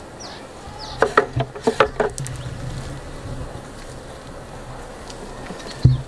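Honeybees buzzing around an open hive. Wooden hive frames knock and click as they are handled, in a cluster about a second in and once more loudly near the end.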